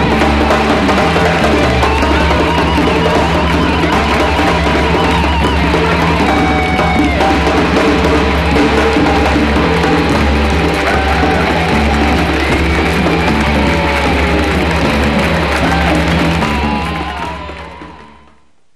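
Rock band playing with a drum kit and electric guitar, fading out near the end.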